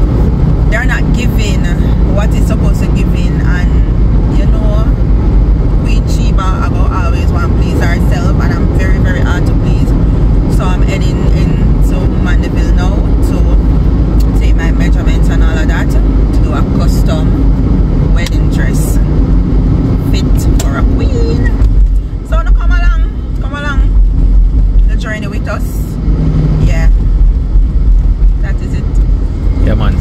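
Car road and engine noise heard from inside the cabin at highway speed: a loud, steady low rumble that dips briefly a few times in the last third, with voices talking over it at times.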